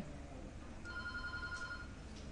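A faint electronic ringing tone, several pitches at once, starting almost a second in and lasting about a second, over a low steady hum.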